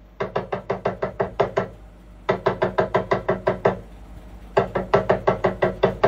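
Talking drum struck in three quick runs of about nine even beats each, roughly six beats a second, with a short pause between runs. Every beat sounds at the same pitch, without the bend of a squeezed drum: the nine-beat counted rhythm being practised.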